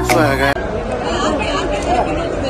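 Background music that cuts off abruptly about half a second in, followed by the chatter of a crowd of people talking over one another.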